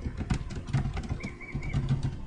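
Computer keyboard typing, a quick run of keystroke clicks, as a short keyword is entered. A bird calls three short high notes near the end.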